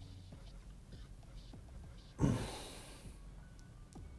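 A sharp breath blown out into the microphone, like a sigh, about two seconds in, over quiet background music.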